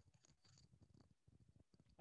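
Near silence: only faint low background noise.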